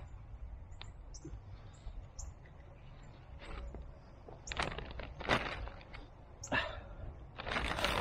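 Granular 10-10-10 fertilizer being scooped from its plastic bag and scattered among watermelon vines: a few faint ticks of pellets landing, then louder rustles and crinkles from about halfway, over a low steady rumble.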